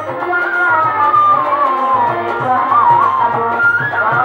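Violin playing a sliding, ornamented folk melody, bowed solo over a hand drum keeping a steady beat.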